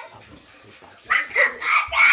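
Children's short, high-pitched yelps and shrieks in rough play, three quick cries starting about a second in.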